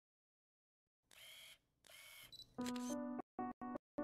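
Silence for about a second, then two short camera-shutter sound effects in quick succession. From about two and a half seconds, keyboard music comes in, chopped into short bursts with sudden silent gaps.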